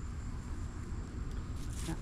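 Insects trilling steadily at a high pitch over a low rumble.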